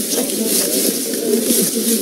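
Several people talking over one another in a murmur, with plastic shopping bags rustling as they are unpacked.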